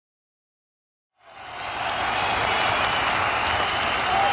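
Applause fading in after about a second of silence, then holding steady.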